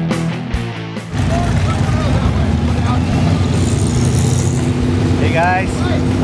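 Rock music for about a second, then a sudden cut to an Ultra4 race car's engine running steadily close by, a loud, uneven low rumble. A man's voice starts near the end.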